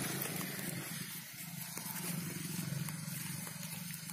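Steady low engine drone at constant speed, a fine rapid pulsing under a high hiss.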